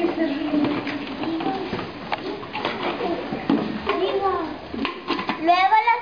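Young children's voices talking throughout; near the end a group of children begins reciting a rhymed verse together, louder than the talk before it.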